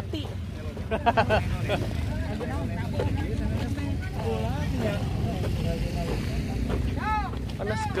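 Several people's voices talking and calling out here and there, over a steady low rumble.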